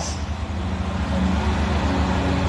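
A steady low rumble with a faint hum over it, level and unbroken, in a pause in the preaching.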